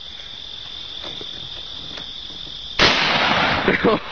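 A single pump-action shotgun blast about three quarters of the way in, sudden and loud with a short noisy tail, followed by laughter. A steady high-pitched insect trill runs underneath.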